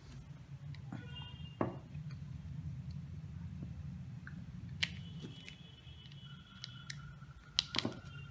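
Small screwdriver turning a small screw through a plastic wheel hub into a BO gear motor's shaft: scattered light clicks and scrapes, with a cluster of sharper clicks near the end, over a steady low hum.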